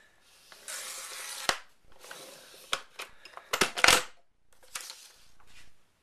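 A paper trimmer cutting through a printed paper page: a rasping slice of about a second, then several clicks and a couple of sharp knocks, and another quieter rasping stretch near the end.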